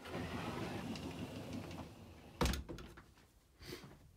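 A wooden wardrobe door being worked by hand: a rubbing noise for about two seconds, then a sharp knock about two and a half seconds in, and a lighter knock near the end.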